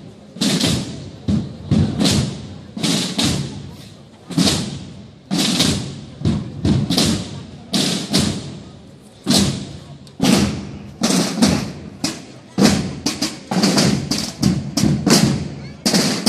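Procession drum band of snare drums beating an uneven marching cadence of sharp strikes, each ringing briefly, the strokes coming closer together in the second half.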